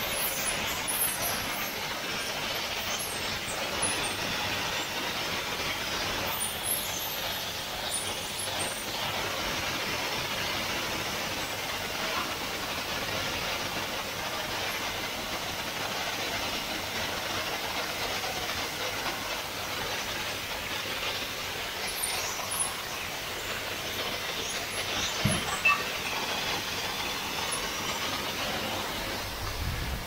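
Steady hiss of gas torch flames heating glass for crystal headlight lenses in their moulds, with a couple of short metallic knocks near the end.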